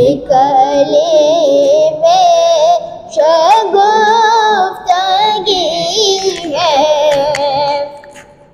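A boy's solo voice singing an Urdu naat, in long, wavering, ornamented phrases with short breaks for breath between them; the phrase ends and the voice falls away near the end.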